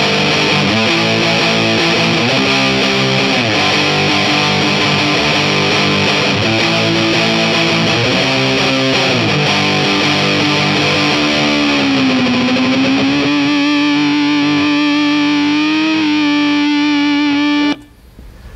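Phantom-style electric guitar with a Fender Telecaster neck and Strat-style single-coil pickups, played loud on the lead pickup through a Big Muff fuzz pedal, tuned to open G: fuzzy chords and riffs, thin and gnarly. About twelve seconds in the pitch dips and comes back up, then one note is held with a slight waver until it cuts off shortly before the end.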